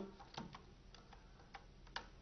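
Faint computer keyboard keystrokes: a handful of single, separate key clicks.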